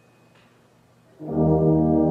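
A brass band, with tubas deep underneath, comes in together about a second in on a loud, sustained full chord after a moment of near silence.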